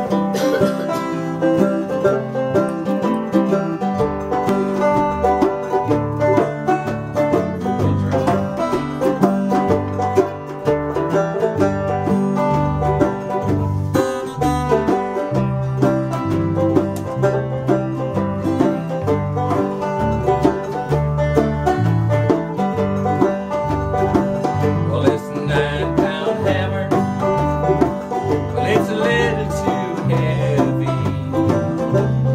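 Small acoustic string band playing a bluegrass-style tune, with mandolin and acoustic guitars strumming and a hand drum keeping time. A low bass line comes in about four seconds in.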